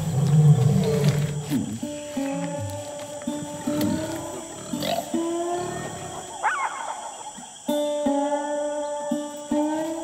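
A lion roaring in the first two seconds or so, then gentle plucked-string music with held notes.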